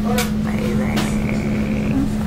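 Pizzeria room noise: a steady low machine hum with one fixed tone under it, with a couple of sharp clicks and background voices.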